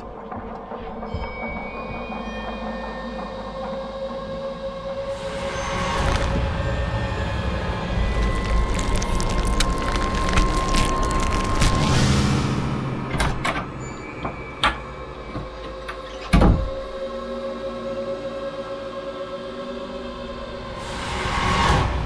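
Creepy horror-style sound design: a sustained eerie drone with held tones, a noisy swell that builds through the middle and fades, scattered clicks, and one sharp hit about 16 seconds in, with another swell rising near the end.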